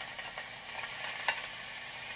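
Freshly washed, wet rice sizzling in hot oil in a frying pan with fried onion, a steady hiss as the rice begins to toast. A single light click of a utensil on the pan a little over a second in.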